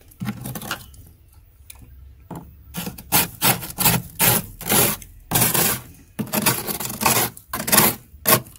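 A metal utensil scraping thick frost and ice off the walls of a freezer compartment. It makes one brief scrape, then, from about three seconds in, a run of rasping strokes at about two a second.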